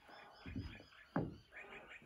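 Great Highland bagpipes being lifted onto the shoulder and blown up before playing, before the drones sound: low handling thuds about half a second in, then a short croak that falls in pitch a little after one second.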